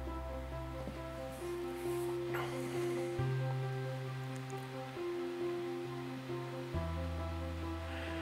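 Background music: soft sustained chords over a held bass note that changes about every three and a half seconds.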